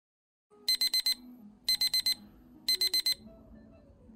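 Electronic alarm clock beeping: three rapid runs of four short, high-pitched beeps, each run about a second after the last. It is a morning wake-up alarm.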